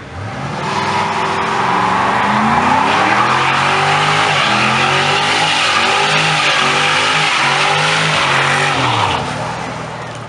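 Ford Mustang convertible doing a burnout: the engine is held at high revs, its pitch rising and falling, while the spinning rear tyre screeches against the asphalt. The noise builds about half a second in and eases off near the end.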